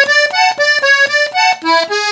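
Hohner Compadre diatonic button accordion, tuned in E, playing a quick run of short, detached notes that change pitch: the song's recurring ornament.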